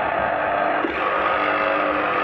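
Sinbo electric citrus juicer's motor running steadily, its spinning reamer squeezing grapefruit halves.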